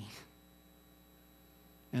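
Near silence with a faint steady electrical hum from the sound system. A man's voice trails off at the start and comes back in at the very end.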